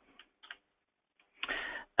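A few faint, sharp computer keyboard clicks as a value is typed into a field, followed near the end by a brief, louder sound from the speaker's voice.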